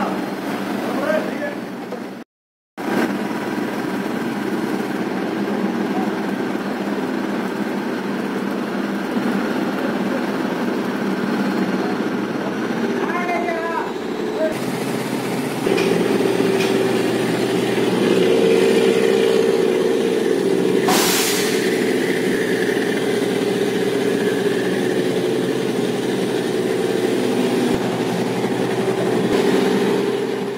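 Diesel engine of a truck-mounted borewell drilling rig running steadily, growing louder and heavier from about halfway, with a short hiss about two-thirds of the way through. The sound drops out completely for about half a second near the start.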